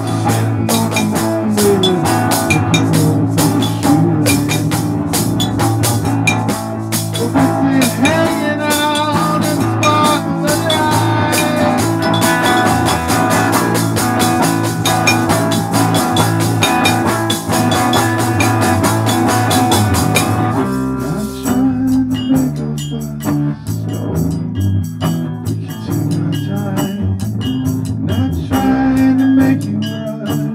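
A live band playing an instrumental passage: drum kit with cymbals, bass guitar and guitar. About two-thirds of the way through, the cymbals and drums fall away and the playing thins to a sparser, quieter groove.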